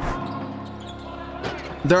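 A steady held electronic tone, several pitches sounding together, with a short whoosh at its start; a narrator's voice comes in at the very end.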